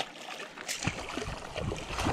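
Hooked Murray cod thrashing at the water surface, a run of irregular splashes.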